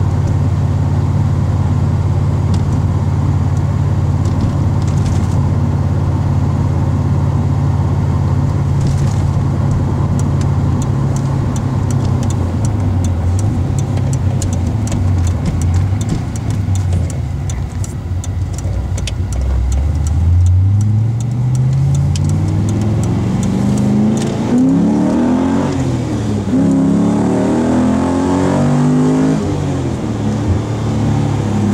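Holden Commodore SS V8 heard from inside the cabin, running steadily at low revs, then from about two-thirds of the way through accelerating hard with the revs climbing, falling back once and climbing again.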